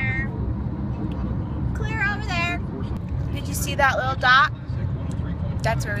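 Steady low road and engine rumble inside a car's cabin while driving at highway speed.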